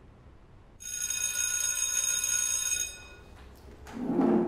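Electric school bell ringing for about two seconds, starting about a second in and cutting off abruptly.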